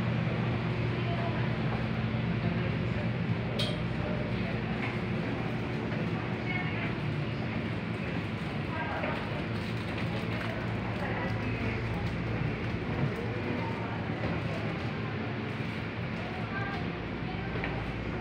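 Indistinct background voices over a steady low hum, with one sharp click about three and a half seconds in.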